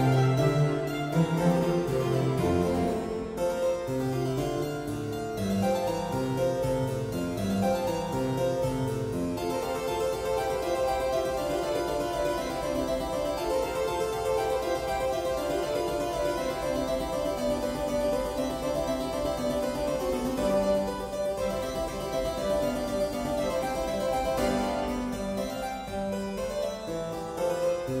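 Harpsichord concerto music played by sampled instruments rendered from Sibelius notation software. The harpsichord runs continuously through quick, changing notes at a steady loudness.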